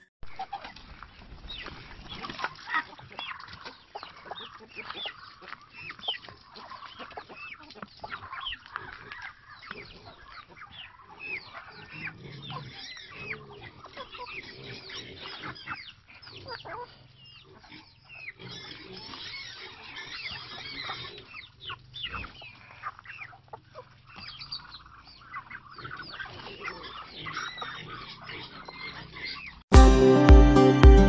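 A backyard flock of free-range chickens, Rhode Island Red and Australorp hens, clucking and calling, many short overlapping calls from several birds at once.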